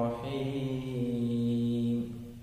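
A man chanting in a slow, melodic voice, holding one long steady note through the second half that fades out at the end.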